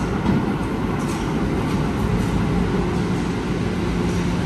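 Subway train running along the track: a steady rumble of wheels on rail with a low hum. There are a couple of faint clicks in the first second or so.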